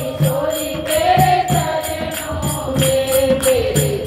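A group of women singing a Hindu devotional bhajan together in kirtan style, with hand claps and a dholak drum keeping a steady beat.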